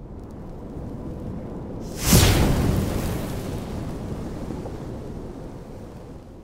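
Cinematic logo-reveal sound effect: a low rumble, then a heavy boom with a falling sweep about two seconds in, its rumbling tail slowly fading.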